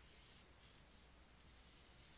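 Near silence, with faint scratching of a stylus stroking across a writing tablet.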